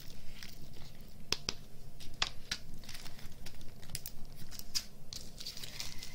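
Small clear plastic bag of crystal diamond-painting drills being handled and crinkled, with scattered sharp clicks and ticks through the handling.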